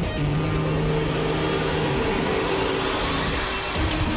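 Background score: held low notes under a rising noise swell that builds for about three and a half seconds and breaks off shortly before the end.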